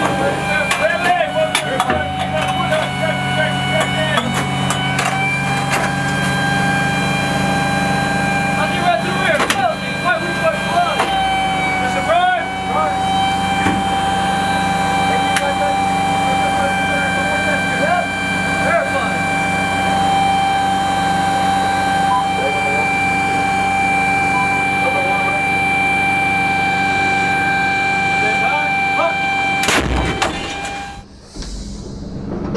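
Steady machinery hum with a high whine inside an M109A6 Paladin self-propelled howitzer's crew compartment. The whine dips briefly in pitch about twelve seconds in. Scattered metal clicks and knocks are heard, most of them in the first ten seconds, as the crew handles the breech.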